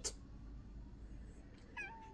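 A long-haired domestic cat giving one short, quiet meow near the end, after a stretch of near quiet.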